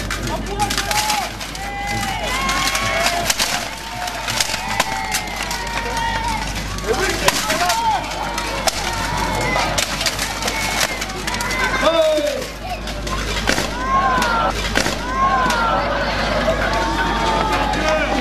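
Crowd of spectators talking and calling out, with scattered sharp knocks and clanks of weapon blows landing on steel plate armour during a duel.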